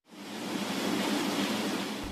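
A steady rushing hiss that fades in over the first half second and then holds.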